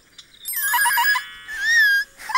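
Short musical sting: a few quick repeated notes over a held chord, then a wavering high note near the end.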